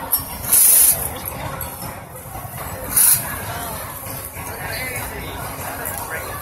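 Two short, loud hisses, like a burst of compressed air or spray being released, the first about half a second in and the second, shorter, about three seconds in, over a steady murmur of fairground voices.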